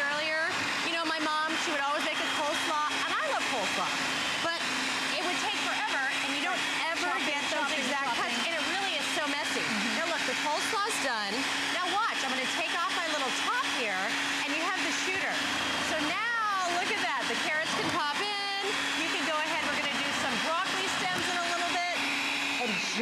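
NutriBullet Veggie Bullet electric food processor's motor running steadily with a constant hum while its shredding blade shreds cabbage fed down the chute. The hum stops near the end.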